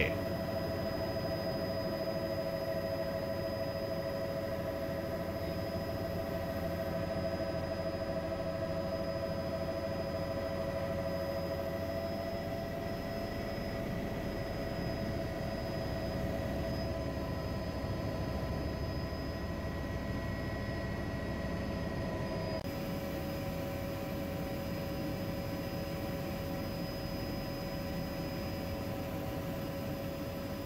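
Helicopter heard from inside the cabin: a steady engine and rotor drone with a whine held on a few steady pitches, the sound shifting abruptly about three-quarters of the way through.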